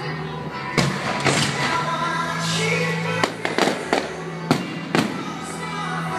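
Aerial firework shells bursting in a string of about seven sharp bangs at uneven intervals, several close together around the middle, over music.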